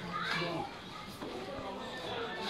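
Indistinct background chatter of children's voices, with no clear words.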